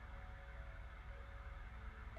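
Quiet pause: faint room tone with a low steady hum and a few faint steady tones, and no distinct events.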